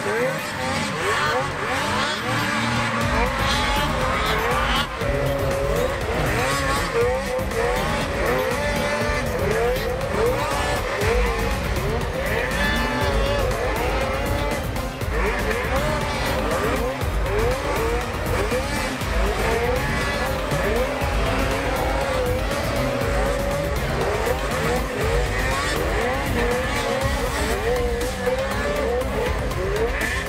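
Several racing snowmobiles' two-stroke engines revving up and down again and again, pitches rising and falling as the sleds race through the course, with background music underneath.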